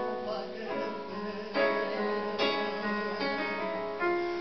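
Live band music in an instrumental passage: an acoustic guitar strumming sustained chords, with a new chord struck about every second.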